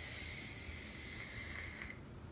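Air being drawn through a handheld vape during one long inhale: a faint, steady hiss with a thin whistle in it, breaking off near the end.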